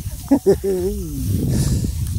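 A man's voice speaking briefly, followed by under a second of rustling as dry rice straw is pushed through by hand.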